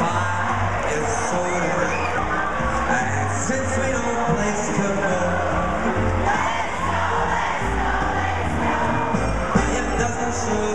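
Live band music played through an arena's sound system, recorded from the stands, with crowd noise over it.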